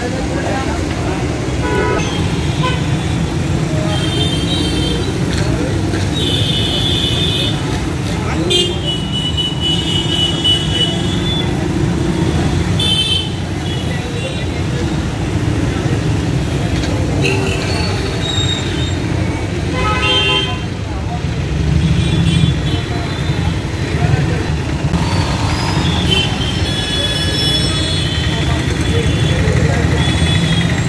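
Busy street traffic: motorbikes, auto-rickshaws and cars running past in a steady rumble, with many short vehicle horn toots scattered throughout and voices from the roadside crowd.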